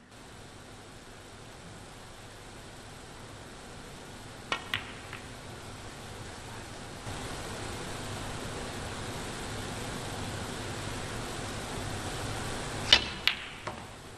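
Snooker balls clicking: three sharp clicks of cue and balls about four and a half seconds in, then a louder click near the end followed by two softer ones, over a steady arena hush.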